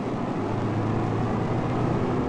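School bus engine running steadily with road noise as the bus drives, heard from inside the bus, a steady low hum.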